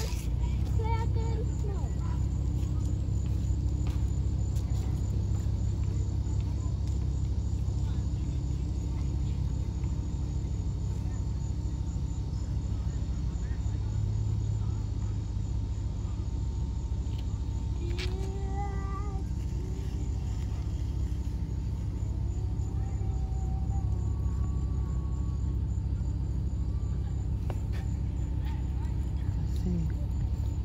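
Steady low rumble throughout, with faint distant voices about two-thirds of the way in.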